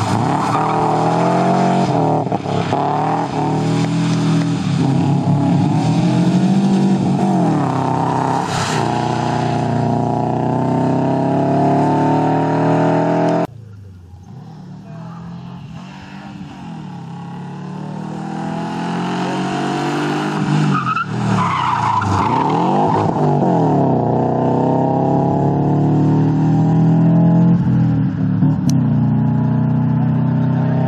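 Subaru Impreza rally car's flat-four engine revving hard and changing gear repeatedly as it slides through a tarmac corner and accelerates. The sound cuts off abruptly about halfway, then the engine is heard again growing louder as the car approaches, running at high revs, and easing slightly near the end as it pulls away.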